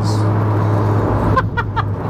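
Steady low drone of a MK7 Golf R's 2.0-litre turbocharged four-cylinder, heard inside the cabin while cruising, with road noise.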